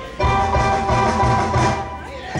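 A live band starts a song about a quarter second in: sustained chords over a pulsing bass and drum low end, the instrumental lead-in before the vocals.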